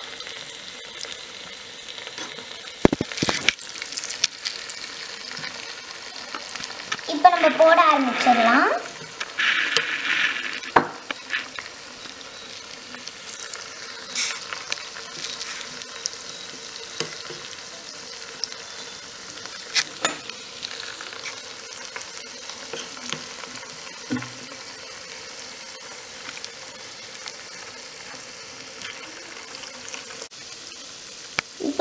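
Potato pakora deep-frying in hot oil in a tiny steel pot, the oil bubbling steadily, with a few sharp clicks. About seven seconds in, the loudest sound is a brief wavering, pitched, voice-like sound lasting a second or two.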